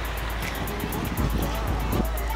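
Street traffic with a steady low rumble, under background music with a quick, even ticking beat.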